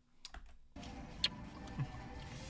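Near silence, then about three-quarters of a second in a faint, steady car-cabin hum comes in suddenly, with a few light clicks and rustles from a cardboard food box being handled.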